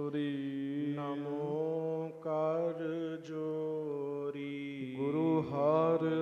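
A man chanting a Sikh invocation into a microphone, drawing the words out in long, wavering melodic notes over a steady drone, with a short break about five seconds in.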